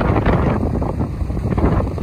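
Strong wind buffeting the microphone: a loud, gusty, uneven low rumble.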